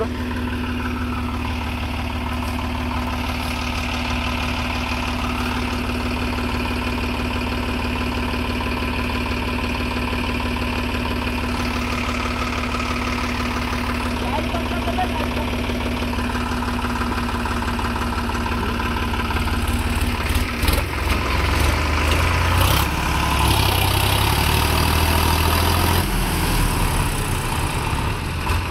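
Diesel tractor engine running with a steady note, then turning louder and uneven for several seconds about twenty seconds in, as it works hard with a tractor and rotavator stuck in deep mud.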